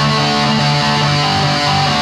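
Guitar music: a guitar playing sustained notes over a steadily held low note, with the upper notes changing a few times.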